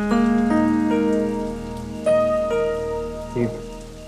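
Background music score: slow, sustained held notes that shift to new pitches every half second or so, with a brief sliding note about three and a half seconds in.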